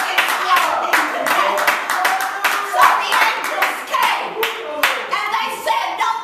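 Rhythmic hand clapping, about four claps a second, with voices over it.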